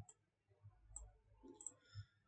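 Near silence with a few faint, short computer mouse clicks, about five in two seconds.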